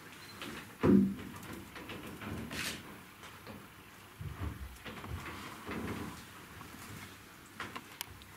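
Footsteps and shuffling on a stage floor as performers change places, with one sharp thump about a second in and a few heavier steps later on.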